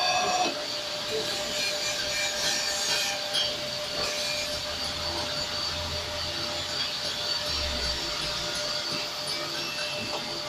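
Crankshaft grinding machine running, its abrasive wheel grinding a turning crankshaft journal with a steady hiss and a constant hum.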